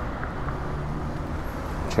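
Steady road traffic noise from a city street, with a low engine hum from a car in the middle.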